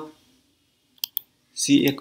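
Two short, sharp clicks about a fifth of a second apart, in a pause between spoken words.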